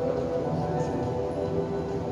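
Ambient music of long held notes that shift slowly in pitch, over a steady low hum.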